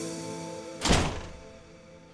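Front apartment door pushed shut with a single thunk about a second in, over background music that is fading out.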